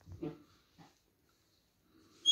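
A dog's brief, soft whimper near the start, with a fainter short one just under a second in.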